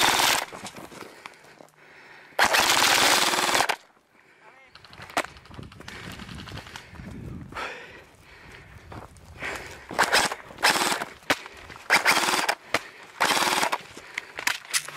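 Airsoft rifle firing on full auto: one long burst of about a second and a half a couple of seconds in, then several short bursts in the second half.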